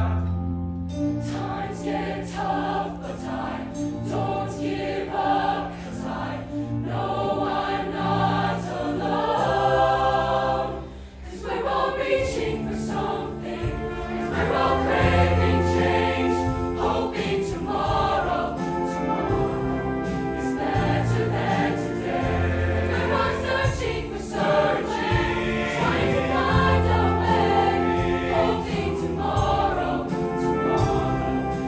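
A large mixed choir singing in parts, women's and men's voices together, with a brief drop in loudness about eleven seconds in before the singing swells again.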